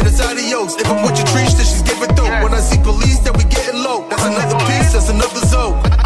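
Trap music: a beat with deep bass notes that slide down in pitch on each hit, fast hi-hats, and a rapped vocal over it.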